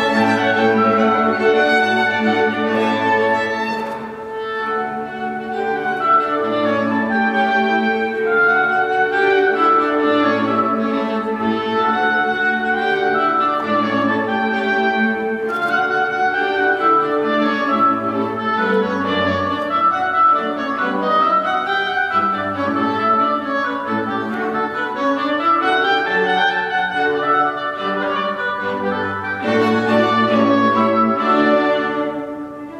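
Clarinet and string quartet playing classical chamber music together, with bowed violins and cello under the clarinet. Rising and falling runs pass through the parts in the second half.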